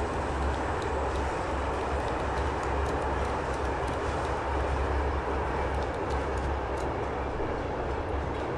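Steady rumble and hiss of a moving passenger train heard from inside the carriage, with faint scattered ticks.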